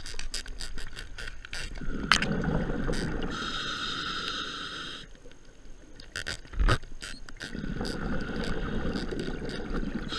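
Scuba regulator breathing heard underwater: bubbling exhalations, each followed by the hiss of an inhalation through the regulator, in a slow cycle of about five seconds. Scattered clicks run throughout, with a sharp knock about two seconds in and a louder one near the seven-second mark.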